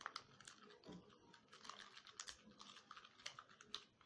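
Faint, irregular clicks and scrapes of a plastic spoon stirring a thick, wet paste in a small ceramic bowl.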